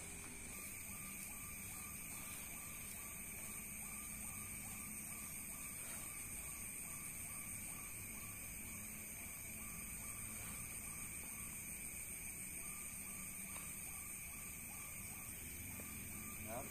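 Steady chorus of night insects, a high-pitched continuous trilling, with a fainter lower tone that comes and goes.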